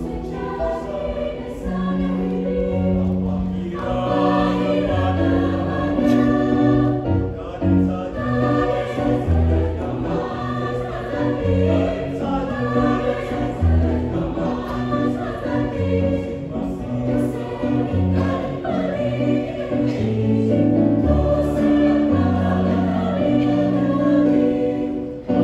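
Mixed choir of men's and women's voices singing in several parts, a low bass line under higher voices, moving together through held chords.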